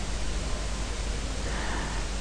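Steady hiss of the recording's background noise with a low hum underneath; no other distinct sound.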